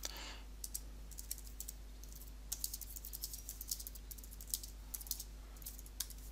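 Typing on a computer keyboard: irregular runs of light key clicks with short pauses between them.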